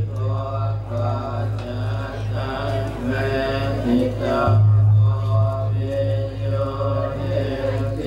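Buddhist monks' chanting, amplified through a microphone, in a steady recitation. A large bronze gong is struck about four and a half seconds in, its deep hum pulsing as it slowly fades under the chant.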